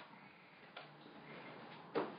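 Two light knocks about a second apart, the second louder, over faint room noise.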